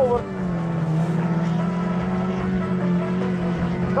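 Autocross rodeo-class cars' engines running at steady high revs on the dirt track. The engine note sags slightly early on and then holds level.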